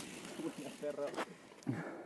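Faint voices of people talking at a distance, with a short click about a second in.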